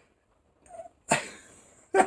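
A man's sudden, breathy, strained vocal noise of disgust about a second in, fading over most of a second, with the start of a laugh at the very end.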